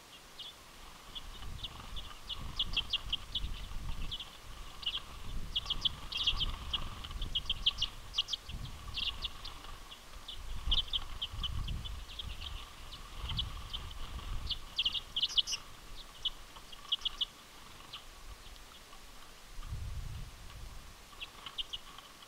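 A flock of common redpolls calling: quick bursts of short, dry chit notes, many birds at once, coming and going. Intermittent low rumbles run underneath.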